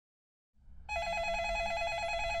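Telephone ringing with an electronic ringer: a rapid warbling two-tone trill that starts about a second in, over a faint low room hum.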